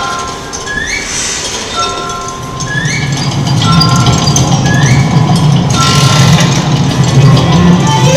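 Music from the Nippon TV giant Ghibli clock's mechanical show: clinking, bell-like tones with three short rising swoops about two seconds apart. A low rumble builds in under it from about three seconds in.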